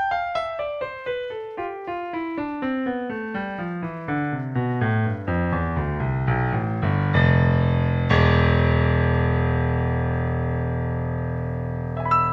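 Piano track from a keyboard instrument, played back without EQ: a quick run of notes falling from high to low, about four notes a second, then two loud low chords that ring on and slowly fade.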